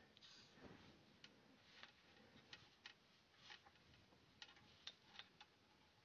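Near silence with faint, irregular light clicks and taps as small parts and a hand tool are handled.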